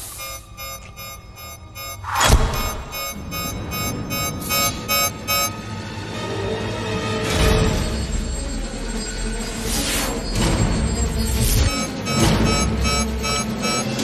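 Film soundtrack: a dramatic score over sound effects, with a sudden loud hit about two seconds in and deep rumbling swells through the second half.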